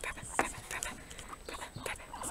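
A long-haired guinea pig snuffling and rustling right at the microphone: a run of short, irregular sniffs and scratchy noises.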